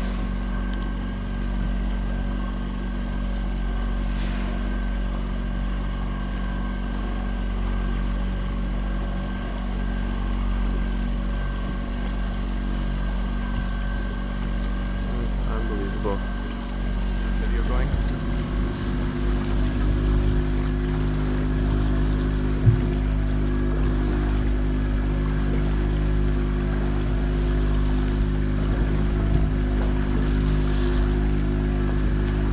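Boat engine running steadily, a fixed low hum with a faint wash of water and wind; the hum's pitch changes about eighteen seconds in, and a single sharp knock comes about two-thirds of the way through.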